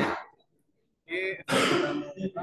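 A person's voice trails off, the sound drops out almost entirely for about half a second, then a person clears their throat with a short, harsh burst near the end.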